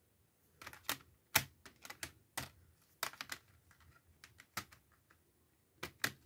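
Plastic CD jewel cases being handled, clicking and clacking: a run of irregular sharp clicks, the loudest about a second and a half in.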